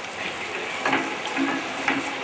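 Steady background hiss in a pause of a man's speech over a microphone, with a couple of faint brief sounds about a second in.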